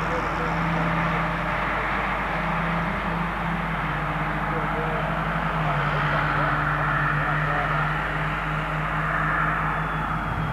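A steady engine drone with a broad rushing hiss, its pitch stepping slightly lower about halfway through, and faint indistinct voices under it.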